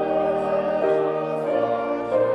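Slow church music: a choir singing long held notes in chords over sustained accompaniment, the chord changing every half second to a second.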